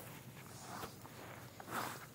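Faint scuffing footsteps: two soft, short swishes about a second apart over a low background hiss.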